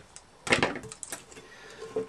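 Handling noise from a decorated tin can: a cluster of sharp clicks and knocks about half a second in and a few lighter ones about a second in, as the can and its rhinestone trim are handled on the table.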